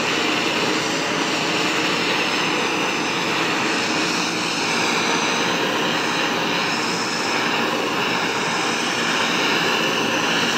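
Hand-held gas torch burning with a steady rushing hiss as its blue flame is swept over pine boards, scorching the wood.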